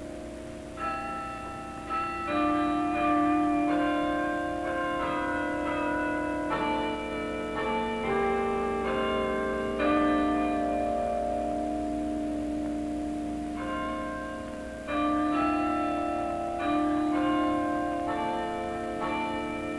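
Tower bells ringing a slow sequence of struck notes. Each note rings on and overlaps the next, and a new strike comes roughly every second.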